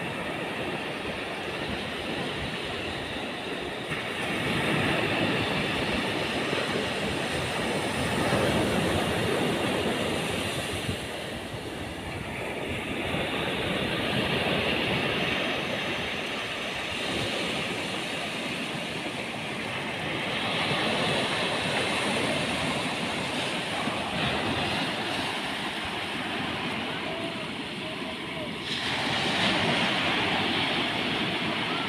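Ocean surf breaking and washing up onto a sandy beach, a steady rushing noise that swells and eases every few seconds as the waves come in.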